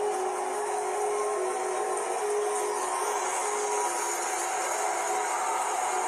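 The song's last held chord fading out about halfway through, heard through a phone recording of film audio, over a steady noisy hiss.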